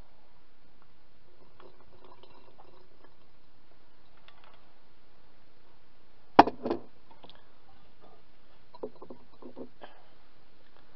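Glass bottles being handled and filled with syrup: faint clinks and liquid handling over a steady hiss, with one sharp knock about six and a half seconds in and a couple of smaller knocks just after.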